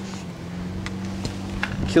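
Faint clicks and scuffs of someone moving and handling a camera on an asphalt-shingle roof, over a steady low hum.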